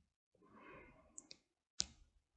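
Near silence broken by a few faint clicks, the sharpest one near the end, over a faint soft rustle.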